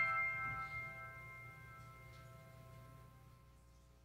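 Grand piano's final chord ringing on and slowly fading away, dying out about three and a half seconds in.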